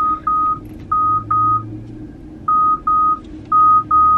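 Car's proximity (parking-sensor) warning beeping: repeated pairs of short high beeps, about one pair a second, a false alarm since nothing is near the car.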